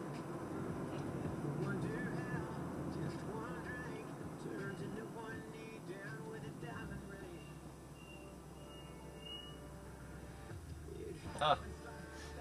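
Low, steady road rumble inside a moving car's cabin, with a radio faintly playing voice and music through the first half. Near the end a man says a short "huh".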